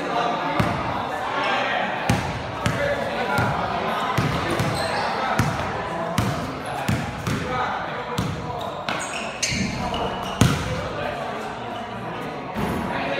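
Basketball dribbled on a hard gym floor, repeated bounces ringing in a large hall, with one louder thump near the end. Players' voices are heard over the bouncing.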